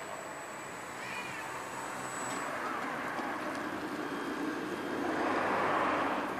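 Small electric motor and propeller of an E-flite Apprentice radio-controlled trainer plane running on the ground, growing louder toward the end, with a brief wavering whine about a second in.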